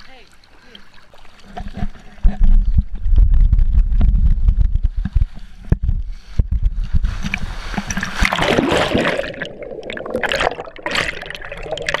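Riding down a water slide with the camera close to the body: a low rumble of water rushing and the body sliding along the flume starts about two seconds in, giving way to a loud hiss of rushing, splashing water for the last few seconds.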